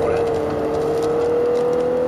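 Lexus LC coupe's engine pulling under load in a high gear, its note rising slowly and steadily as the car gains speed, heard from inside the cabin with road noise underneath.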